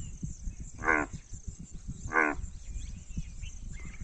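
Indian bullfrog (Rana tigrina) calling: two short, low, lowing croaks about a second apart, the first about a second in and the second a little past two seconds. It is a rival call, used to drive another frog away.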